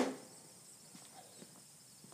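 A loud knock right at the start that dies away quickly, then faint footsteps on concrete over a steady high insect trill.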